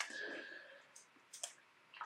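A quiet pause holding a few faint, short clicks, two of them between about one and one and a half seconds in.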